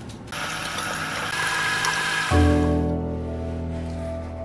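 A steady mechanical rattle, likely a roller window shade being raised, for about the first two seconds. Then soft background music comes in with a low, held chord that slowly fades.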